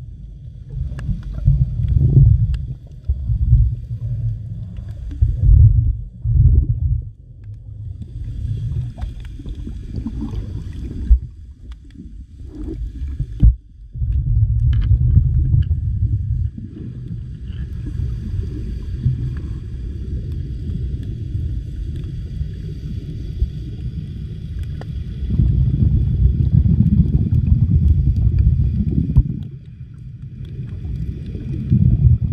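Underwater sound of a camera moving through shallow reef water: a low rumbling wash of water that swells and drops, briefly falling away about halfway through. A faint steady high-pitched whine comes in a few seconds in and returns for most of the second half.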